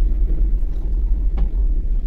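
Steady low rumble of room noise, with a single faint click about one and a half seconds in.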